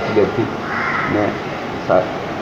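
A man speaking in short phrases, with a harsh hoarse call behind the voice about a second in.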